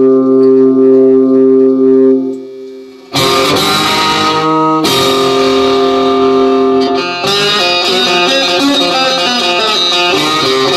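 Homemade round-bodied banjo-style string instrument played through effects pedals. A held chord rings steadily and dies away over about three seconds, then plucked, strummed rhythm starts, with a short break near the five-second mark.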